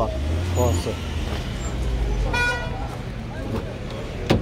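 A short vehicle horn beep about two and a half seconds in, over a low rumble of vehicles.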